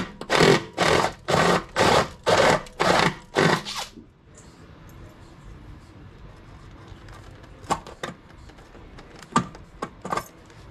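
Power drill with a step drill bit cutting through the sheet-metal frame rail in short bursts, about two a second, stopping about four seconds in. After that there are a few light clicks and taps.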